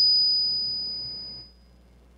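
Microphone feedback through the PA: a single steady high-pitched whistle, loudest at the start, fading out about a second and a half in.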